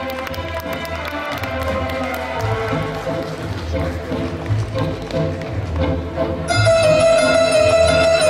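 Viennese waltz music playing over the hall's sound system for the dancers, becoming louder and fuller about six and a half seconds in.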